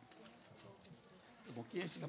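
Quiet hall room tone with faint, indistinct voices, and a short burst of off-microphone speech near the end.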